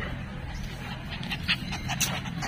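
A miniature pinscher panting quietly, with a few faint ticks.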